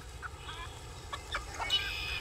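Domestic chickens clucking in the background: a few short calls, with a longer call near the end.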